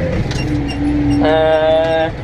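Case Maxxum 125 tractor engine running steadily under load as it pulls a cultivator, heard from inside the cab. Over it a voice holds two long hummed notes, the second higher and brighter.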